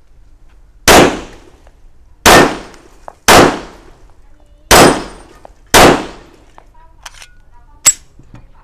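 Five shots from a Laugo Arms Alien 9 mm pistol, fired one by one at an even pace about a second apart, each with a short decaying tail. A single sharp click comes just before the end.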